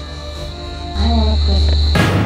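Crickets trilling steadily over low, tense background music; a deep music drone comes in suddenly about a second in.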